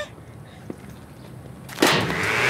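Quiet outdoor background with a faint click less than a second in, then near the end a leaf blower starts up with a sudden loud blast of air.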